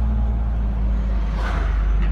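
Car driving slowly, heard from inside the cabin: a steady low engine and road rumble. An oncoming car swishes past about one and a half seconds in.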